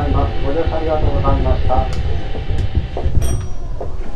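Keisei electric train running low and slowly as it draws to a stop along a station platform, heard from the driver's cab. An announcement voice runs over it for about the first two seconds. A few short, high metallic clicks and rings come near the end.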